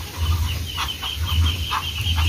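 Muscovy ducks calling softly: a run of short, quiet chirps, about three or four a second, over a thin, pulsing high-pitched trill and a low rumble.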